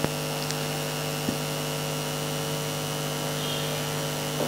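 Steady electrical hum with several steady tones running through it, and a faint tick just over a second in.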